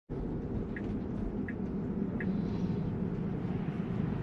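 Tyre and road noise inside a Tesla electric car's cabin as it rolls along, a steady low rumble with no engine note. Three faint, short, high chirps come evenly spaced in the first half.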